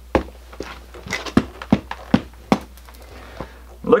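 Black leather work boots with freshly reglued soles stamped on a concrete floor: a run of sharp knocks, roughly two a second.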